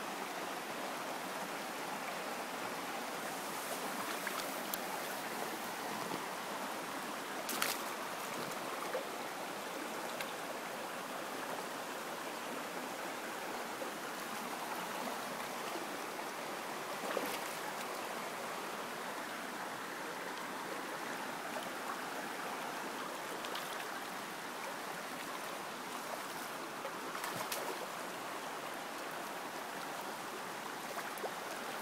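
Shallow stream water running steadily over rocks. A few brief, sharp ticks or splashes break through, one about eight seconds in, one near the middle and one near the end.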